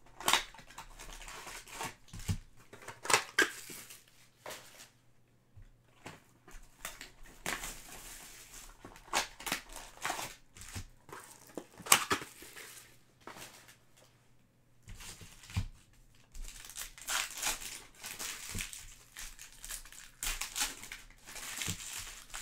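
Foil trading-card pack wrappers crinkling and tearing, with hard plastic card holders handled and set down, in irregular short rustles and a few sharp clicks. The crinkling grows denser in the last few seconds.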